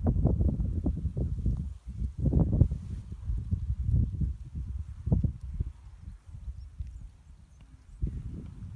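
Wind buffeting a phone microphone outdoors: an uneven low rumble in gusts, strongest in the first few seconds and easing toward the end.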